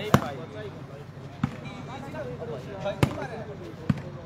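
A volleyball being struck by players' hands and forearms during a rally: four sharp slaps spaced about a second or more apart, the first the loudest.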